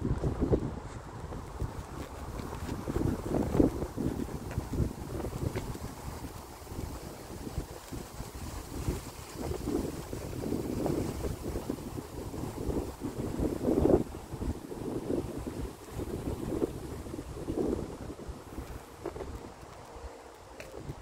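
Wind buffeting the phone's microphone: a low, uneven rumble that swells and fades in gusts, loudest a few seconds in and again near two-thirds of the way through.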